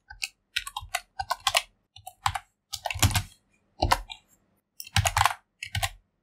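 Computer keyboard keys clicking in short, irregular clusters with brief pauses between them, as blocks of text are copy-pasted into a code editor.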